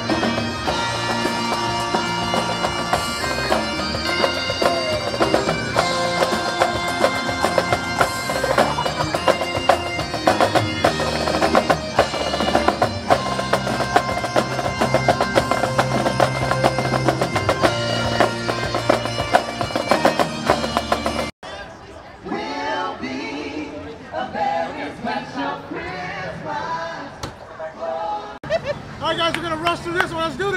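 A live marching band of snare drums and sustained wind instruments playing a steady, loud tune with rapid drum hits. It cuts off suddenly about three-quarters of the way through, giving way to crowd chatter.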